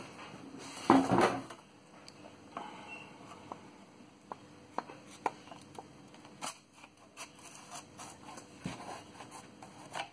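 Handling of a hand saw's wooden handle and steel blade as the handle is fitted onto the blade: a brief louder rustle and scrape about a second in, then scattered light clicks and taps of wood and metal.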